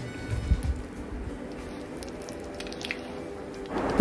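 Hot oil bubbling and faintly crackling in a steel kadai, under soft background music, with a soft knock about half a second in.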